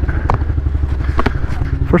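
Honda CRF110F's small air-cooled four-stroke single idling steadily, freshly started and holding its automatic fuel-injected idle with no choke. A couple of light clicks sound over it.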